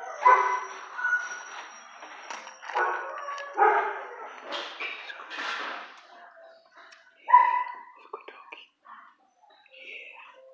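Dogs barking at irregular intervals, with one short, loud bark about seven seconds in.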